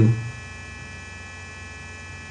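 Steady electrical mains hum with a buzz of many even, unchanging tones under a pause in narration.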